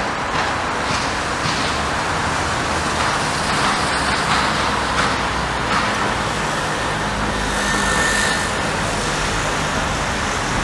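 Steady city street traffic: a continuous rush of cars going by, swelling slightly about eight seconds in.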